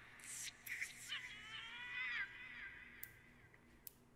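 Faint audio from an anime episode: a few short noisy hits, then a drawn-out wavering pitched sound lasting about a second that rises slightly and then falls away.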